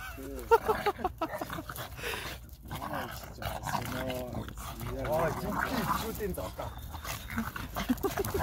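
A French bulldog and another dog play-fighting, with short repeated dog vocalisations over people talking.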